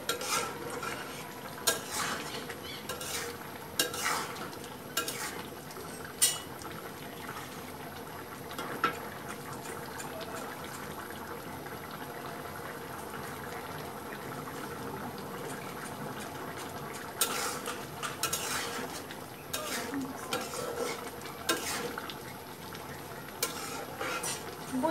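A metal spatula clicking and scraping against a metal karahi as a thick curry is stirred, in bursts during the first few seconds and again a few seconds before the end. Between them the pot simmers with a steady low hiss.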